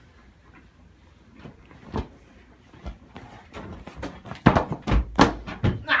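Thumps and knocks from people scuffling over an inflatable beach ball, with the phone being jostled: one sharp knock about two seconds in, then a quick run of loud thumps in the last second and a half.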